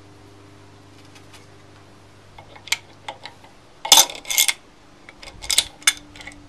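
Steel tools clinking and clanking: an adjustable wrench being fitted onto the nut of a harmonic balancer installer tool. A few light clicks are followed by loud clanks about four seconds in and again near the end.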